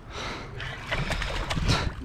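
A small hooked tautog splashing at the water's surface as it is reeled in, with a few brief splashes standing out.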